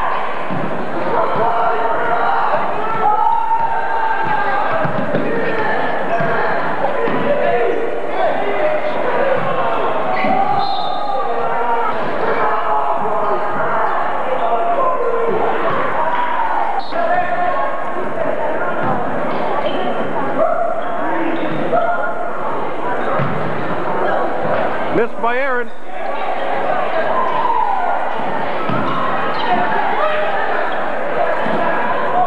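Basketball game in a gym: spectators' chatter and shouts throughout, with a basketball bouncing on the hardwood court and occasional thuds.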